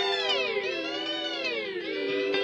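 Electric guitar through an EarthQuaker Devices Avalanche Run delay and reverb pedal: the delayed repeats sweep down and back up in pitch twice, the warble of the delay time being changed, over a steady reverb-washed note.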